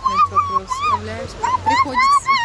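A high-pitched voice squealing in a string of short rising-and-falling calls, with a brief pause a little past the middle.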